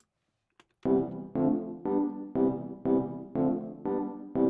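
Logic Pro's Vintage Electric Piano software instrument playing back a MIDI region: the same chord struck over and over, about two a second, starting about a second in.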